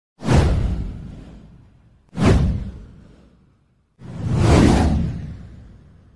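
Three whoosh sound effects from a news title intro, about two seconds apart. Each begins suddenly and fades away over a second or so, and the third swells up more gradually before dying away.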